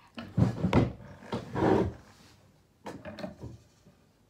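Several short knocks and a rub against a wooden tabletop, in a cluster over the first two seconds and a smaller one about three seconds in.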